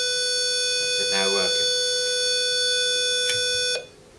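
Easitag door entry panel sounding its steady, buzzy door-open tone, which stops abruptly near the end. The tone signals that the newly added key fob was accepted and the door lock released.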